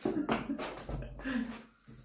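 Voices in a small room: a few murmured sounds and a short laugh about one and a half seconds in.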